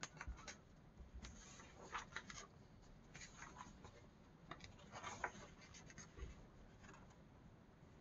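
Faint rustling and flicking of paper as the pages of a paint-with-water coloring book are turned by hand: a scatter of short scrapes that stops about a second before the end.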